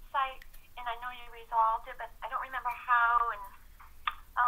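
A person talking over a conference-call line, the voice thin and phone-like.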